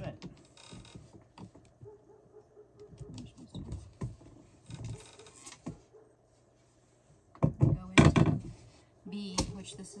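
Clicks and knocks of flat-pack shelf assembly: small metal screws and wooden dowel pegs handled, and laminated particleboard panels moved on the floor, with a louder cluster of knocks about eight seconds in.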